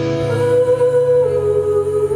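Live band music: a woman's voice holds a long wordless note that dips in pitch and comes back up near the end, over sustained electric guitar chords.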